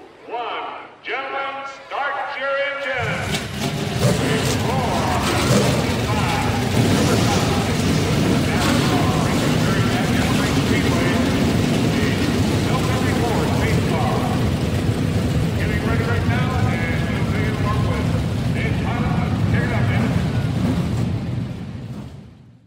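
Voices calling out the end of a countdown, then about three seconds in a field of NASCAR stock-car V8 engines fires up at once and keeps up a loud, dense, steady rumble, fading out near the end.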